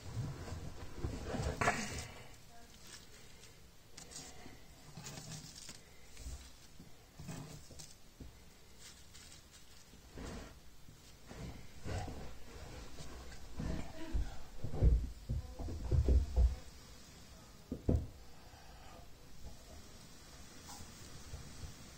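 Dry wood shavings rustling as they are handled and pushed around a glowing ember of charred punk wood. A few louder, deep bumps come in a cluster past the middle and once more near the end.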